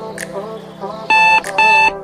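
Digital alarm clock beeping in short, evenly spaced beeps, about two a second, starting about a second in, over background music.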